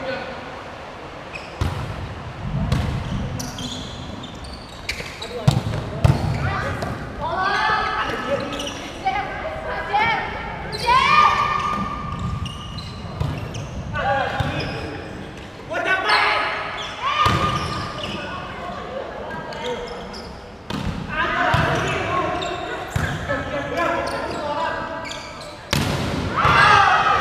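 Volleyball rally in a large indoor hall: the ball is struck again and again with sharp slaps, while players shout calls to each other between the hits.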